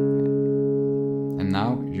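Steel-string acoustic guitar, tuned down a half step, ringing two notes plucked together: the open 4th string and the 3rd string at the 2nd fret. The chord sustains and slowly fades, then is cut short about three-quarters of the way through.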